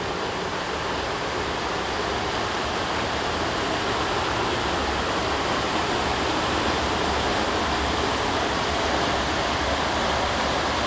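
Steady rushing of water flowing through a laboratory flume over a gravel bed, with a low rumble underneath.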